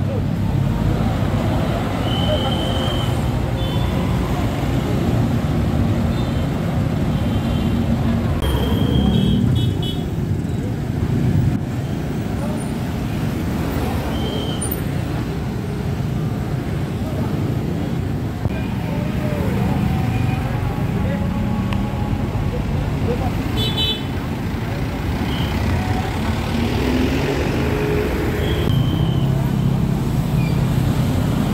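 Busy city street traffic: car and motorbike engines running steadily in passing traffic, with several short high-pitched toots scattered through.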